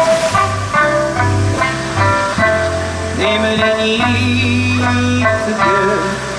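Live band music in Okinawan pop style: acoustic and electric guitars over a steady bass line, with a wavering melody line riding on top.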